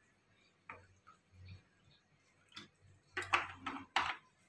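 Faint, scattered clicks and light knocks of kitchen items being handled, with a louder run of clicks about three seconds in.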